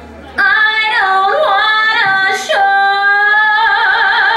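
Recorded Broadway show-tune vocal by a woman: after a short pause, a sung phrase that steps down in pitch twice and settles into a long held note with vibrato.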